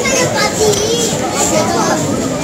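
Background voices: children playing and people talking all around.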